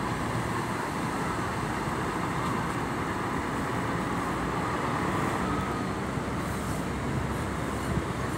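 A large coach bus's diesel engine running steadily as the bus pulls slowly away and turns, with road and traffic noise.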